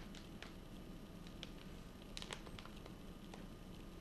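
Faint scattered taps and crinkles of a plastic soft-bait package being picked up and handled, a few clicks about two seconds in, over a steady low hum.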